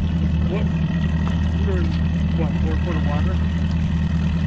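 Boat outboard motor running steadily at low speed, a low even hum, under faint voices.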